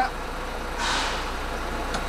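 Armoured personnel carrier's diesel engine idling steadily, heard from inside the cab. About a second in, a brief rushing noise as the roof hatch is pushed open.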